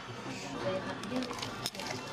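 A knife and fork working on a plate of food, with a light click of cutlery near the end, over the faint murmur of voices in a restaurant.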